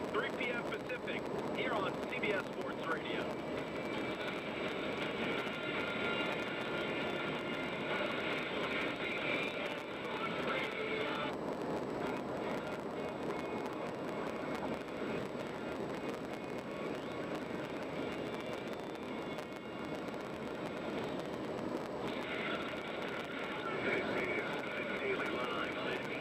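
Steady road and tyre noise from a car driving at highway speed on a concrete expressway. A faint, narrow-band broadcast sound comes and goes above it.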